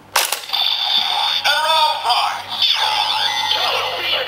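A sharp plastic click as a Progrise Key is slotted into a candy-toy (SG) Kamen Rider Zero-One Driver belt, then the toy's electronic transformation sound effects and music with warbling synthesized tones.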